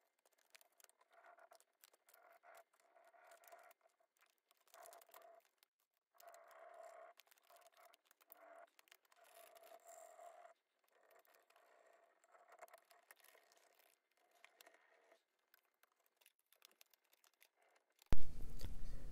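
Near silence with faint, irregular scratching and crinkling: a rub-on flower transfer is burnished through its clear plastic backing sheet onto painted wood with a flat tool, and the sheet is handled and lifted away.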